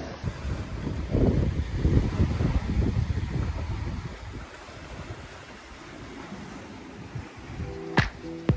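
Wind buffeting the microphone in gusts, a low rumble that is loudest in the first half and then eases to a steadier low rush.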